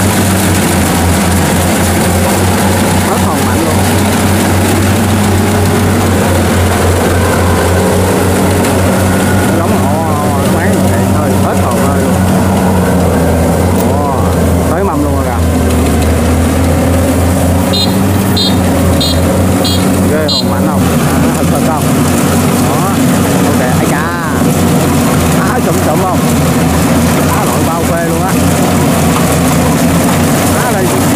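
Kubota DC70 Pro combine harvester's diesel engine running steadily under load as it harvests and crawls on tracks through soft, muddy rice paddy. About two-thirds of the way through, a quick run of five short high beeps sounds over it.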